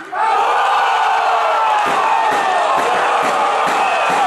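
A long, drawn-out shout celebrating a goal, starting suddenly just as the penalty goes in and held with slowly falling pitch, over crowd noise.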